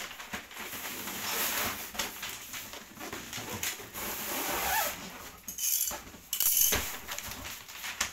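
Gift wrapping paper rustling and crinkling in irregular bursts as it is folded and pressed around a large cardboard toy box.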